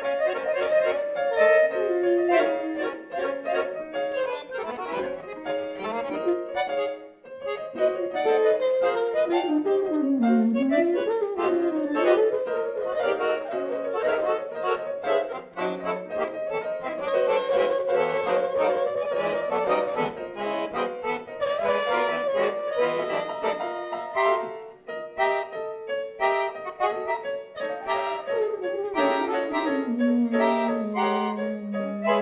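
Free-improvised jazz: an accordion playing fast, wandering runs of notes, joined in the second half by a trumpet.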